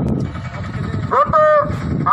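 A man's drawn-out announcement over a horn loudspeaker, starting about a second in, above a low rumble of crowd and engine noise.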